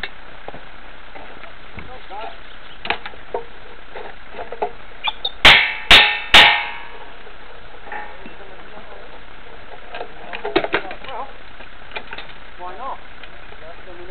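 Three loud, sharp metal-on-metal blows in quick succession about five and a half seconds in, each ringing briefly, as tools and the rail cutter are handled on the steel rail. Smaller knocks and clanks come before and after.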